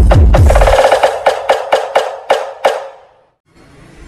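Electronic dance music played loud through a large PA sound system with 18-inch subwoofer stacks. About a second in, the heavy bass drops out, leaving sharp percussion hits about four a second, and the music dies away about three seconds in.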